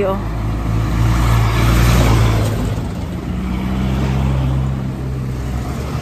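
Motor traffic passing on a road: engine and tyre noise swells to a peak about two seconds in and fades, then a second vehicle comes by around four seconds in.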